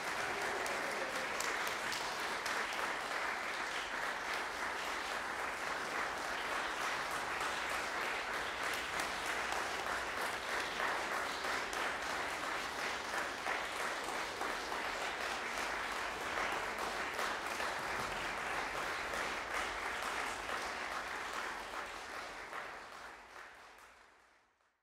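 Audience applauding steadily, a dense patter of many hands clapping, fading out over the last couple of seconds.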